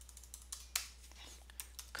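Typing on a computer keyboard: a quick, irregular run of key clicks, with a couple of louder strokes just under a second in.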